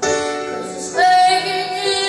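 A young girl singing a pop ballad into a microphone, amplified through the hall's speakers; a louder, held note starts about a second in.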